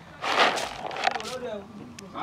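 Indistinct background voices, with a short hiss less than a second in.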